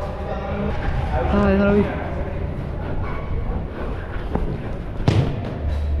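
Players' shouted calls in the first two seconds, then two sharp knocks a little under a second apart near the end: a football being struck during play.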